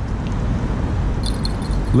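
Steady low rumble of wind on the microphone, with a few faint ticks about a second in from a spinning reel being cranked against a hooked fish.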